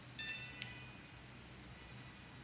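Receiver of an 880 remote dog training collar beeping at power-on as its power button is held down: one loud, bright electronic beep of about half a second, a moment in, followed by a small click.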